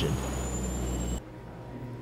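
Movie sound effect of a hovering flying craft: a steady rushing engine noise with a faint high whine creeping slowly upward. It cuts off abruptly just over a second in, leaving quiet room tone.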